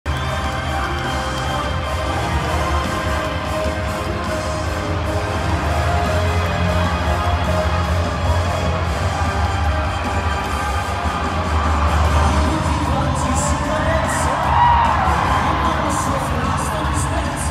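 Live pop music played over an arena sound system, with a steady bass line, while a large crowd cheers and shouts along.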